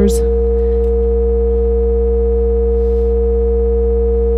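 Instruo CS-L complex oscillator's multiply output holding a steady drone: its two oscillators multiplied together into a dense cluster of unchanging tones over a deep low hum.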